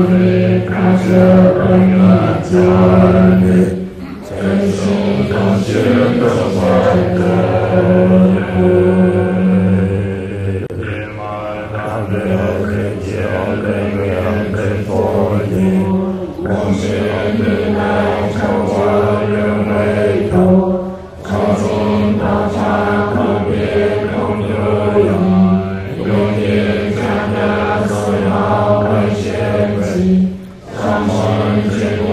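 A Tibetan Buddhist lama chanting a prayer in a deep voice held on nearly one pitch, with brief pauses about four seconds in and again around twenty-one seconds.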